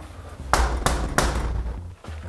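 Three knocks of a fist on a door, about a third of a second apart.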